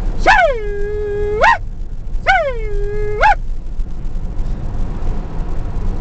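A hog call sounded twice, each a long call of about a second and a half that drops in pitch, holds level, then rises sharply at the end. A steady low rumble of the moving vehicle runs underneath.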